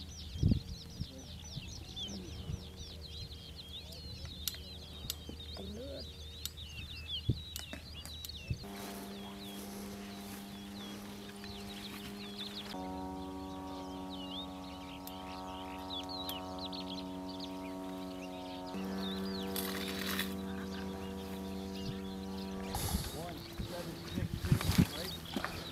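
Many birds chirping over a low steady hum, with a sharp knock about half a second in. About eight seconds in, music of sustained chords comes in and changes chord every few seconds.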